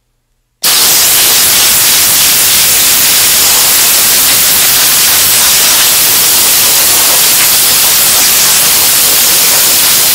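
Compressed-air blow gun blowing sanding dust off a wooden cabinet door: a loud, steady hiss of air that starts abruptly about half a second in.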